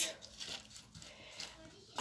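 Faint rustling and scraping of gravelly potting soil as gloved fingers press a small lithops into a pot, with a couple of slightly louder touches.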